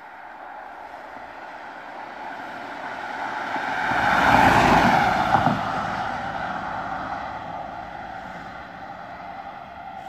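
Emergency doctor's car on a blue-light run driving past at speed: its engine and tyres grow louder to a peak about halfway through, then fade as it moves away.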